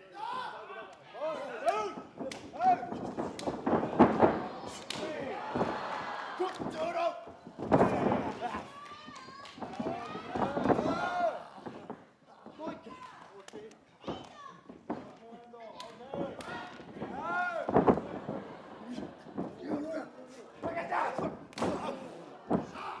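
Pro wrestling match audio: voices calling out, with several heavy thuds and slams of wrestlers hitting the ring mat, the loudest about 4, 8 and 18 seconds in.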